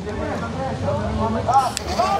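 Two men talking, their words unclear.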